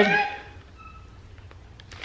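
A woman's voice trails off, then a quiet pause of low room tone with a faint, short high tone about a second in.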